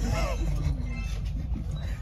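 Steady low rumble inside an Indian Railways AC three-tier sleeper coach as the train runs, with a short burst of voice about the first half second.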